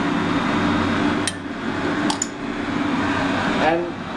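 A steady low mechanical hum runs throughout, with three light, sharp clicks of kitchen utensils, one about a second in and two close together about two seconds in.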